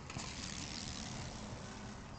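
Mobo Shift recumbent tricycle rolling past close by on a concrete sidewalk. Its tyre noise rises sharply just after the start and fades as the trike moves away.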